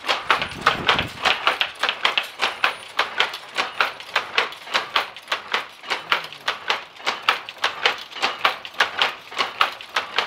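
Dobby powerloom running and weaving: a rapid, even mechanical clatter of picking and beating-up strokes, several sharp knocks a second.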